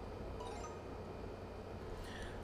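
Quiet room tone: a steady low hum and hiss, with a faint, brief high tone about half a second in.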